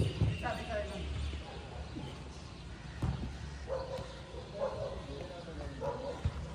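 Indistinct voices of people talking in the background, with a few sharp knocks and a low hum that fades out about a second and a half in.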